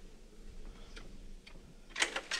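A few faint clicks from a door latch being tried, about a second in and again half a second later.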